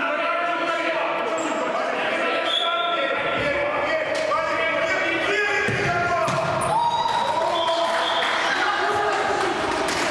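A futsal ball being kicked and bouncing on a hard indoor court, a few sharp thuds, under players' voices calling out, all echoing in a large sports hall.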